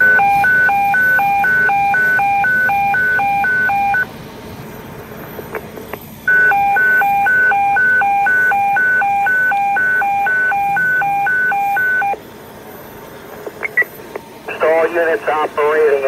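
Fire dispatch emergency evacuation alert tone over a fire radio: a two-pitch high-low warble, switching about twice a second, sounding in two runs of about four and six seconds with a short break between. It signals an emergency evacuation of the fire building. A dispatcher's voice comes over the radio near the end.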